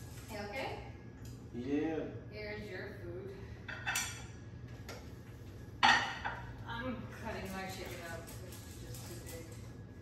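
Dishes and cutlery clinking on a kitchen counter as dinner is served, with a light clink about four seconds in and a sharp clatter of a plate set down about six seconds in.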